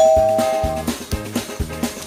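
A single bright chime, two tones struck together and fading out within about a second, over background music with a steady drum beat.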